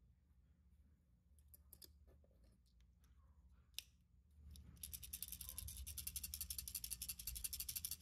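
Stainless steel BBs rattling inside a 3D-printed plastic crankbait body as it is shaken, a fast, even rattle that starts about halfway through. Before it come a few light clicks as the BBs and lure halves are handled.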